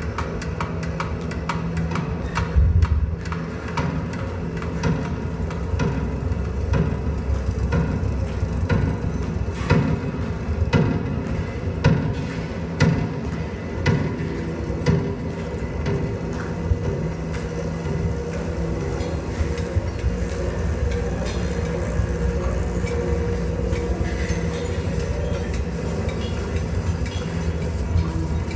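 Audience clapping with music playing in the hall; the clapping is dense at first and thins out about halfway through.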